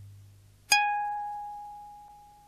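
The tail of a low struck tone dying away, then, about two-thirds of a second in, a single bell-like 'ting' that strikes suddenly and rings on, slowly fading.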